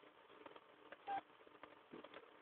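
Near silence: faint room tone with a few soft clicks and one brief short tone about a second in.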